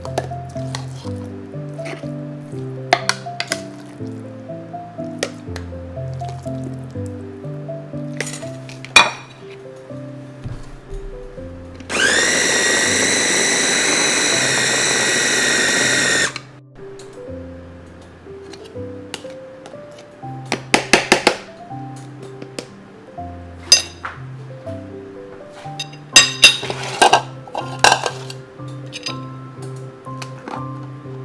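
Ninja food chopper's motor running for about four seconds as it blends a ground pork mixture, rising in pitch briefly as it spins up, then cutting off suddenly. Background music with a steady beat plays throughout, with scattered knocks and clinks before and after.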